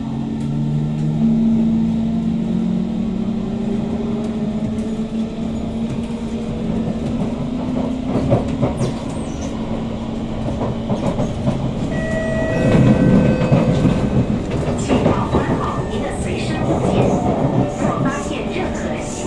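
Kawasaki C151 metro train's traction motors whining, rising in pitch as the train pulls away from the station and gathers speed, then holding a steady tone, with wheels clicking over rail joints. About twelve seconds in, a louder rumble with brief higher tones.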